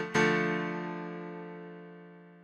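Yamaha MODX synthesizer playing its "Lonely Keys" piano preset: one chord struck just after the start, left to ring and slowly fade away.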